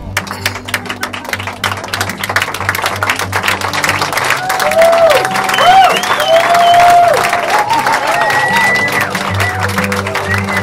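Wedding guests applauding, with whoops and cheers rising over the clapping from about halfway through, over background music.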